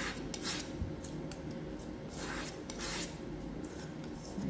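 A metal palette knife scraping and spreading thick sculpture paste on a palette board, mixing the light and dark green paste, in several short scraping strokes.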